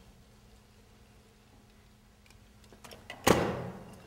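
A steam-filled pop can implodes with one sudden loud crunch about three seconds in, after a few faint clicks. Condensation of the steam inside drops the pressure, and the air outside crushes the can.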